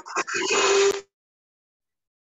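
A loud noisy burst with a steady tone in it coming through video-call audio, about a second long, then cut off suddenly into dead silence.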